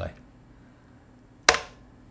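Quiet room tone, then one sharp click about one and a half seconds in: a key or button pressed at a video-editing desk.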